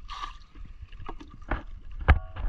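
Seawater being bailed from a small wooden canoe: a short splash as the water in a cut-off plastic jug is tipped over the side, then a few light knocks as the jug is set down in the wooden hull.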